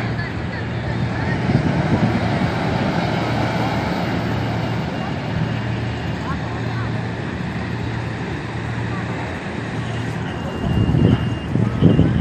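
Toyota Fortuner SUV driving slowly across pavement, its engine a steady low hum, with people talking in the background. The sound gets louder and more uneven near the end as the SUV climbs onto a steel ramp.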